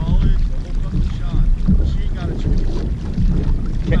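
Wind rumbling on the microphone, with faint, indistinct voices in between.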